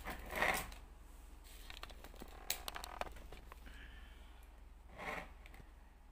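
Plastic sushi takeaway tray being handled and its lid opened: faint scattered clicks and crinkling of thin plastic, with a short rustle about half a second in and another near the end.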